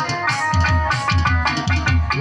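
Instrumental passage of a Bengali bicched (baul folk) song: plucked strings holding melody notes over a steady drum beat, with no voice.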